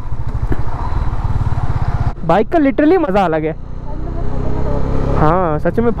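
Honda CB300F single-cylinder engine running under way, with wind noise, pulling steadily for about two seconds. Its note then falls gently as the throttle eases.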